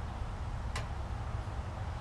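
Steady low rumble of wind on the microphone, with a single sharp click about three-quarters of a second in.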